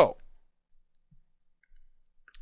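A spoken word trailing off, then near silence with a couple of faint clicks from a computer mouse working a dropdown.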